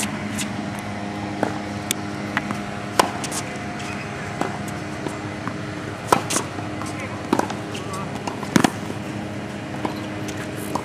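Tennis ball being hit back and forth in a baseline rally on a hard court: sharp racket-on-ball pops and ball bounces every second or two, the loudest a quick pair near the end, over a steady low background hum.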